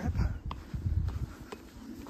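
Footsteps crossing a metal cattle grid, with two sharp clicks about a second apart as boots strike the bars, the first briefly ringing, over a low rumble.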